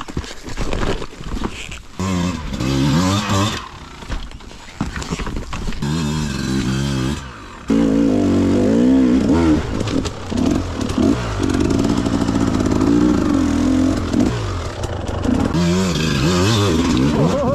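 Two-stroke enduro motorcycle engines revving in bursts over rocks, the pitch rising and falling with the throttle. About eight seconds in, one engine gets suddenly louder and holds high revs more steadily.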